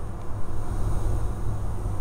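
Steady low drone of a Sling light aircraft's engine and propeller, heard from inside the cockpit.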